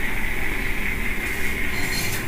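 Steady background hiss with a steady high-pitched whine, and no speech.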